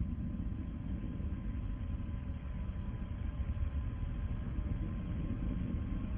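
Steady low rumble of the Soyuz rocket's first-stage engines during ascent, heard inside the crew capsule through a narrow onboard audio feed, with a faint steady tone above it.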